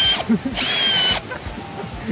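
Cordless drill boring into hard, packed soil to loosen it, run in short bursts. Each burst spins up with a rising whine, then holds steady. One ends just after the start, and another lasts about half a second.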